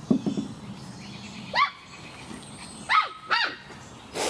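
A five-week-old Samoyed puppy yipping: three short, high yips, one about one and a half seconds in and two close together near three seconds. A few short low sounds come just at the start.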